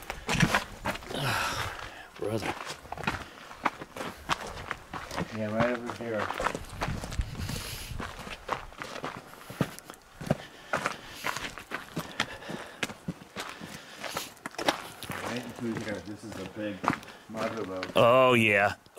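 Footsteps on gravelly dirt and rock, an irregular run of steps.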